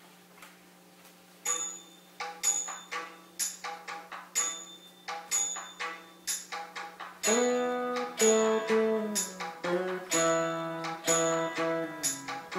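Saraswati veena being plucked in raga Arabhi. Single notes are struck about twice a second, then from about seven seconds in comes a fuller, louder passage with bending, sliding notes (gamakas). A faint steady drone runs underneath, heard alone for the first second or so.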